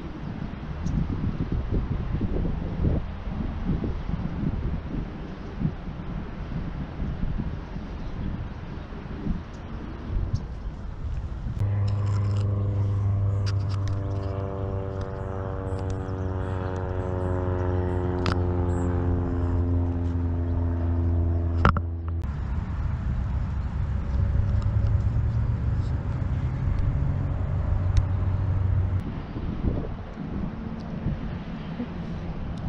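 A low rumble, then a steady engine-like drone that slowly falls in pitch for about ten seconds and cuts off suddenly; a lower hum returns near the end.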